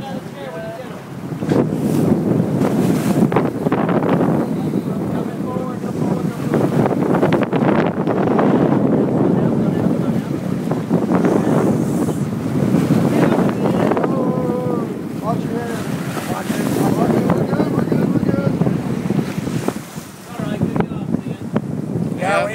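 Wind buffeting the microphone over the steady noise of a sportfishing boat's engine and its churning wake at the stern. Faint voices come through now and then.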